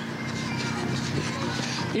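Steady outdoor noise picked up by a reporter's handheld microphone as he runs alongside a race runner, with faint voices in it.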